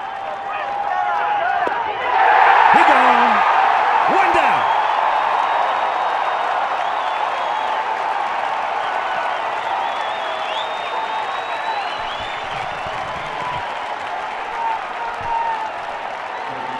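Ballpark crowd cheering, clapping and whooping, swelling sharply about two seconds in as the first out of the ninth inning of a no-hitter is recorded, then staying loud and slowly easing off.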